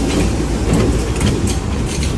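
Freight train rolling past at close range: a steady rumble of steel wheels on the rails, with scattered sharp clacks.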